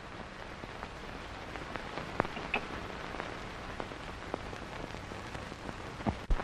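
Hiss and crackle of an early-1930s film soundtrack: a steady hiss with scattered faint clicks and pops.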